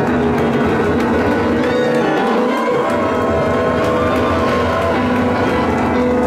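Live playing on a Korg stage keyboard: a loud, busy instrumental passage of chords and melody with no singing.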